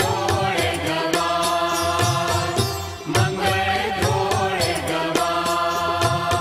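Gujarati devotional bhajan music: a melody carried over a steady percussion beat, with a brief dip in loudness about three seconds in.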